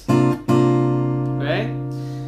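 Takamine acoustic guitar: a fingerpicked chord struck twice, about half a second apart, then left to ring.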